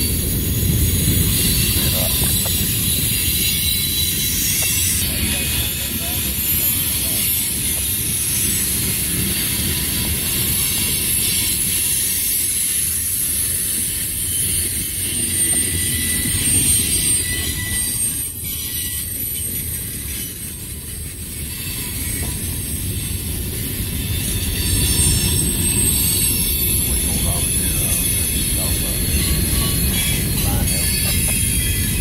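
Freight train cars rolling past: a steady low rumble of steel wheels on rail with a high hiss above it, dipping a little about two-thirds of the way through.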